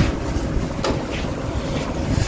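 Steady low rumble of air buffeting the microphone, with a brief plastic shopping-bag rustle a little under a second in.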